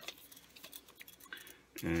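Retractable tape measure being handled and moved into place: a couple of sharp clicks at the start, then scattered light ticks and taps.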